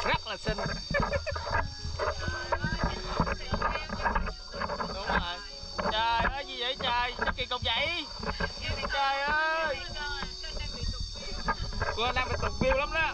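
Several people talking and laughing over one another, with a steady high insect drone from the surrounding trees.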